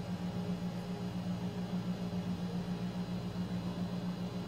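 A steady low background hum that flutters slightly several times a second, with no other distinct sound over it.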